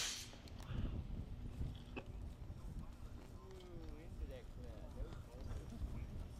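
Wind rumbling on the microphone, with the tail of a rocket motor's burn cutting off right at the start. Faint distant voices come in around the middle, and there is a single sharp click about two seconds in.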